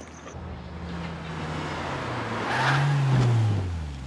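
A classic Porsche 911 driving up, its engine growing louder to a peak about three seconds in, then falling in pitch as the car slows.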